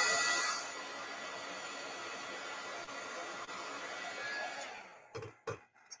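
Embossing heat tool blowing steadily as it melts silver embossing powder on a stamped card; it cuts off about five seconds in.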